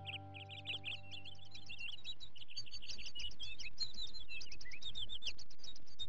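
Many birds chirping in a dense chorus of short, quick calls that grows a little louder, while a held music chord fades out over the first two seconds or so.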